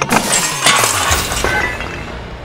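A crash of breaking glass and clattering objects: a sudden hit, then about a second of clinks and rattles that die away.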